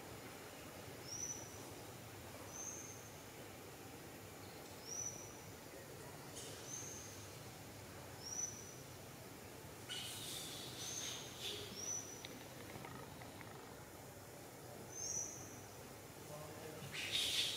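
A bird calling: a short, high whistled note with a quick upward flick, repeated eight times about one to two seconds apart over a steady forest background. A few brief scratchy rustles come in the middle.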